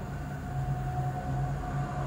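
Steady low hum with a faint even hiss: the room's background noise.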